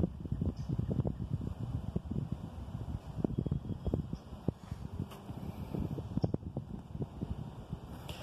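Wind rumbling on the microphone, with many small irregular clicks and rustles from the paperback manual being held and its pages handled.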